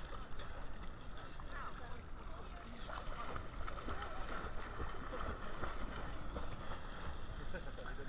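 Sea water splashing and sloshing close by as swimmers move through it, with a low wind rumble on the microphone.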